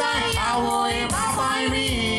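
Live band music with a man and a young woman singing a Konkani song into microphones, over a steady beat.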